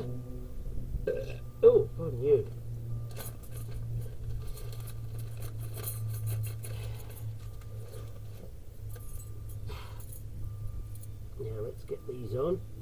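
A plastic parts bag rustling and small metal brake pad clips clinking as they are handled, heard as a run of short clicks and rustles.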